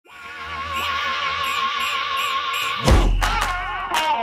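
Intro music: a held, wavering note for about three seconds, then a heavy low hit as the music moves on to new notes.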